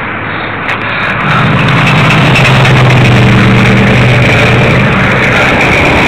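Motorized bicycle's small two-stroke engine revving up about a second in, then running loud at a steady pitch as the bike gets under way.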